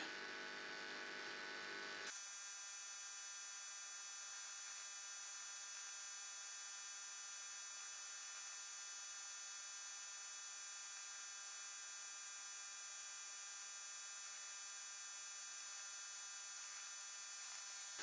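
Faint, steady electrical hum with a high hiss over it. Its lower part drops away abruptly about two seconds in.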